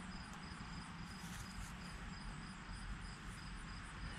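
Faint chirping of insects: a steady, evenly pulsing high trill, over a low rumble.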